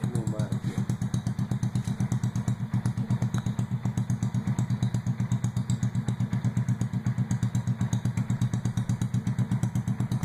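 Small 49cc motorized-bicycle engine idling steadily with an even pulsing beat.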